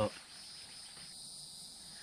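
Insects chirring steadily in the background, several high-pitched tones held without a break.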